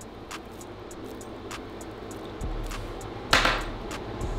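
A joint being lit with a lighter and smoked: a few faint clicks over a low room hum, then a short rush of breath about three seconds in that fades over half a second.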